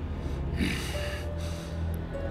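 A single sharp, noisy breath from a man, lasting under a second, comes about half a second in. Tense dramatic score with a low drone and a held note runs underneath.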